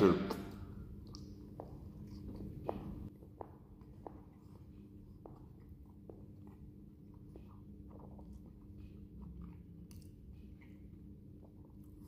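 A man chewing a mouthful of beef Whopper burger, with faint, quiet clicks of chewing about every two-thirds of a second over a low steady hum.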